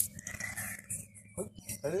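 Mostly a quiet stretch with faint, scattered high-pitched outdoor sounds, then a man's excited exclamation near the end.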